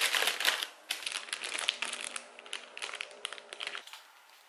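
Thin plastic takeout bag crinkling and rustling as it is handled and unpacked. It is loudest in the first second, then goes on in sparser crackles until it stops just before the end.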